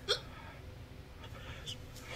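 A man's single short, breathy vocal catch about a split second in, then faint room tone.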